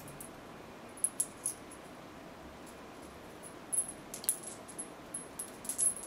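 Coins clinking against each other in faint, scattered clicks as they are shuffled one-handed from the palm out onto the fingertips. A few clicks come about a second in, then a cluster around four seconds and more near the end.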